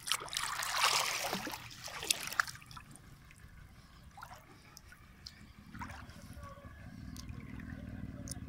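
Water splashing and sloshing, loudest over the first two and a half seconds with a couple of sharp splashes near its end, then dying down to faint trickles and drips.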